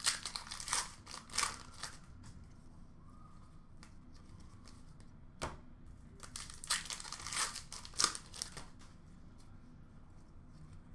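Foil wrappers of Upper Deck hockey card packs being torn open and crinkled. The rustling comes in short bursts near the start and again in the second half, with one sharp tap about halfway through.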